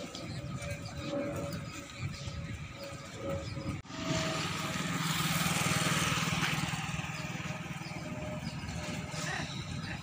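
Highway traffic: a motor vehicle passes close about four seconds in, its engine hum and tyre noise swelling to a peak and then fading.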